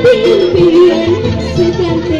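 Loud live band music with a keyboard, a steady low beat and a lead melody that bends up and down in pitch.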